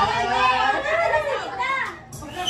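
People talking: voices chattering back and forth.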